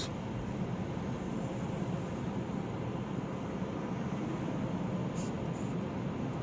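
Steady low rumble and hiss inside a car's cabin while it is being driven.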